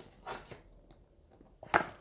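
A tarot card being handled and lifted: a faint rustle early on, then one short, sharper sound near the end.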